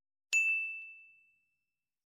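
A single notification-bell 'ding' sound effect: one bright, high chime struck about a third of a second in, ringing on one pitch and fading away over about a second and a half.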